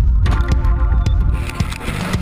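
A loud low rumble of storm wind and vehicle noise from tornado-chase footage, with scattered sharp knocks, under dramatic background music with held chords.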